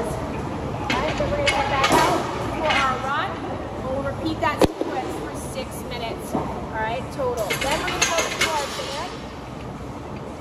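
Busy gym background: other people's voices and scattered knocks of equipment, with one sharp crack about halfway through.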